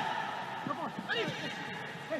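Faint voices over steady background noise of a televised football match played in an empty stadium, with no crowd sound.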